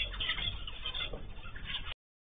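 Aviary birds chirping and chattering in short, overlapping calls, heard through a low-quality camera microphone that cuts off the highs. The sound drops out abruptly just before the end.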